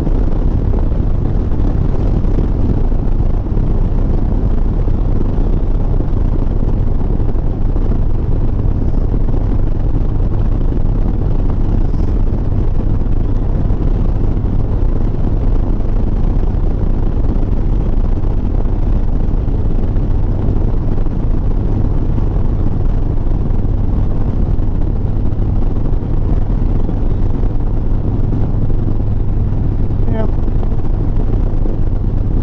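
Harley-Davidson Sport Glide's V-twin engine running steadily at highway cruising speed, a low even drone, with wind noise on the microphone.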